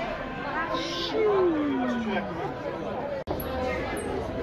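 Background chatter of voices, with one long voice-like sound sliding steadily down in pitch about a second in. The sound drops out for an instant just after three seconds.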